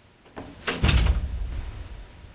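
Two or three sharp clicks, then a heavy thud with a low rumble lasting about a second.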